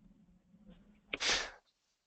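A single short, sharp breath noise from a person close to a microphone, about a second in, over a faint low hum.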